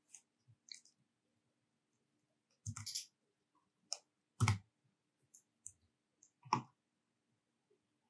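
Scattered clicks of a computer mouse and keyboard keys, about ten short separate clicks with the loudest near three seconds in, four and a half seconds in and six and a half seconds in.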